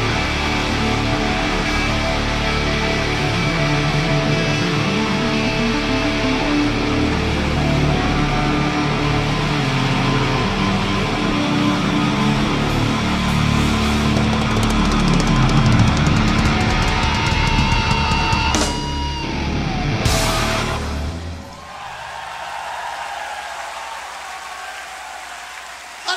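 Live heavy rock band of drums, bass, electric guitar and keyboards playing the closing section of a song. The music ends with sharp final hits about 19 and 20 seconds in, and the sound then carries on much quieter.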